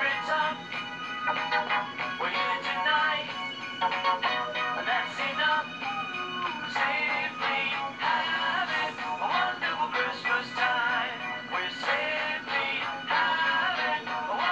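A song on a radio broadcast: a singer's melody over a steady instrumental backing, with a dull top end.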